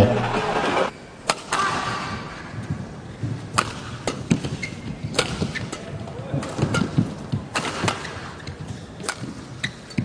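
Badminton rally: a series of sharp racket strikes on the shuttlecock at uneven spacing, with brief shoe squeaks on the court floor and a low arena background.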